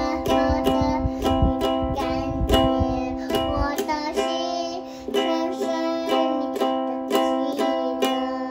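A ukulele strummed in a steady rhythm, about three strokes a second, with a young child's voice singing along; the strumming breaks off briefly about halfway through.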